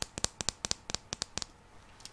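A quick run of about a dozen sharp clicks from a small decorative metal hair clip being handled and clicked with long fingernails. The clicks come about eight a second and stop about a second and a half in.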